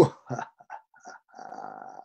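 A man's faint, low, raspy laugh, heard over a video-call audio link.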